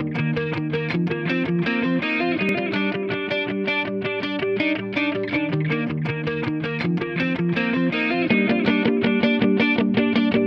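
Rock music led by a distorted electric guitar playing a fast, evenly picked riff of repeated notes, a little louder from about eight seconds in.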